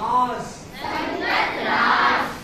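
A man's voice calls out a word. About a second in, a class of children shouts it back together in a loud, many-voiced chorus, repeating the pronunciation after him.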